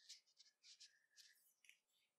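Faint rustling and rubbing of nylon paracord sliding through fingers and against itself as hand-knitted loops are worked and tightened, in a series of short, scratchy strokes.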